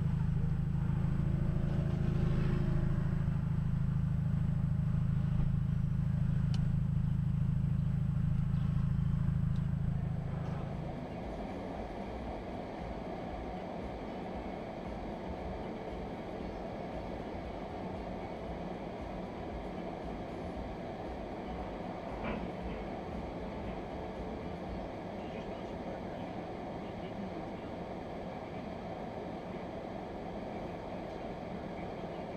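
Dashcam audio of road and engine noise heard from inside a car: a loud, steady low rumble that drops at about ten seconds to a quieter, even hiss. A single short knock sounds a little after twenty seconds.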